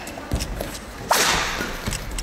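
A badminton racket strikes the shuttlecock hard about a second in: one sharp crack that rings on in the hall. Players' footfalls thud on the court shortly before and after it.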